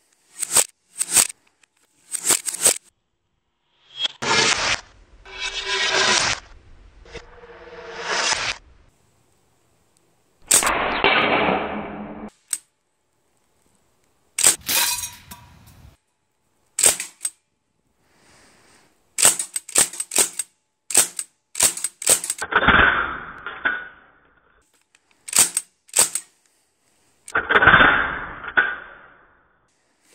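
Sig Sauer MCX .177 semi-automatic pellet rifle firing many sharp shots, often two or three in quick succession, at metal pellet tins. Between the shot groups there are a few longer noises of a second or two.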